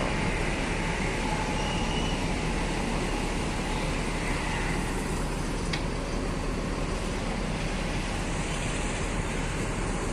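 Steady low rumble and hum of idling coach engines, unchanging throughout.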